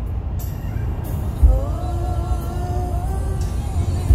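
Steady low road-and-engine rumble inside a moving car's cabin, with music playing over it; about halfway through, a single melodic note is held for nearly two seconds.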